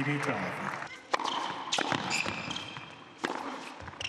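A tennis point on an indoor hard court. The serve is struck about a second in, followed by several more sharp racket-on-ball strikes, some of them followed by short, high shoe squeaks. Applause fades out in the first second.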